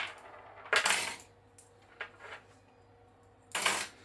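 PPU Partizan rifle bullets clinking as they are dropped back into a small metal cup: a sharp metallic clatter about a second in, a few light clicks, then another clatter near the end.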